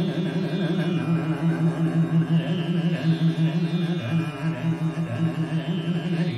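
Male dhrupad vocalist singing a sustained, wavering alap phrase in Raag Jaijaiwanti, the held note shaken in quick pulses several times a second, over a tanpura drone.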